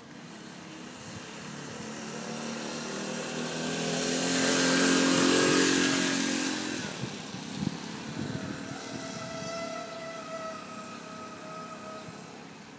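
Four-stroke motorised bicycle engine approaching, passing close by about five to six seconds in, and fading away as the bike rides off down the street.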